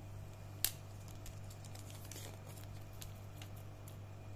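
Plastic earbuds charging case handled in the hands: one sharp click about half a second in, then lighter clicks and short rustles, over a steady low hum.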